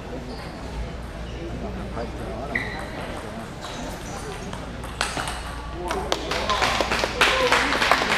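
Table tennis ball struck back and forth in a rally, sharp pings roughly a second apart, then spectators break into applause for the last couple of seconds as the point ends. Crowd voices murmur underneath.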